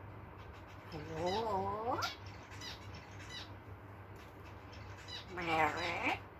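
African grey parrot calling twice in voice-like, drawn-out tones. The first call wavers and ends in a sharp upward glide; the second, louder one comes about five seconds in.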